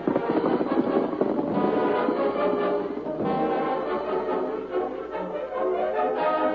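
Orchestral music bridge led by brass, with horns and trombones, playing as the scene-change cue between two scenes of a radio drama.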